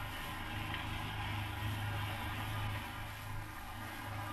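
Steady low hum with hiss and surface noise from an old recording, with no words and no distinct events.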